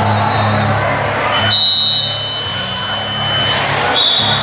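Crowd murmur over a steady hum in a large hall, with a short, high whistle blast about one and a half seconds in, typical of a referee's whistle stopping the action.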